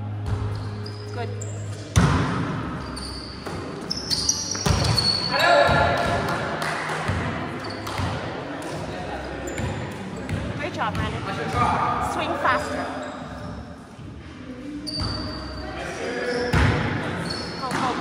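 Volleyball rally in a large gym: the ball is struck several times, with a sharp hit about two seconds in, more around four to five seconds and another near the end. Players' voices call out indistinctly in between.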